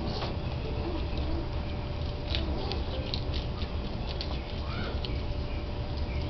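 Baby skunks eating from a food bowl: scattered small clicks and crunches over a steady low rumble.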